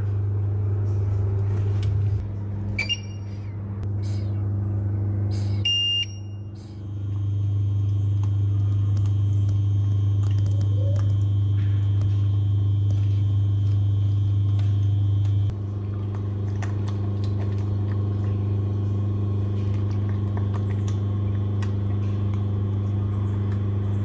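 Steady low electrical hum from a kitchen appliance, with a few short electronic beeps near the start.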